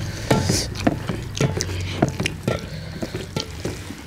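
Hands mixing and squeezing rice with dal on metal plates: wet squishing with many sharp clicks of fingers and food against the metal.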